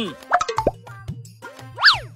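Comic sound effects over background music: a few quick falling 'plop' blips in the first second, then a sharp swoop that rises steeply and falls back near the end.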